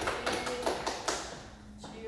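A few people clapping briefly, an irregular patter of claps that thins out and stops about a second and a half in.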